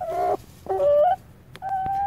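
A hen calling at close range: three short, clear calls, the second stepping up in pitch and the last drawn out into a held note.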